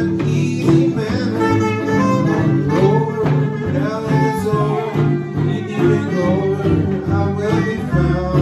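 Small jazz combo playing live swing: soprano saxophone on the melody over strummed archtop and acoustic guitars and a plucked upright bass, at a steady beat.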